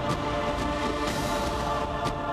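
Dramatic intro theme music with held chords, a sharp hit at the start and a swelling whoosh through the second half.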